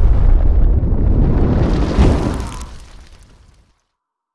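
Explosion-like fire burst sound effect for an animated logo: a loud, dense rush of noise that flares again about two seconds in, then fades away and stops shortly before the end.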